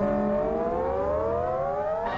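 Opening of the cartoon's orchestral title music: a loud held chord that slides steadily upward in pitch, like a siren.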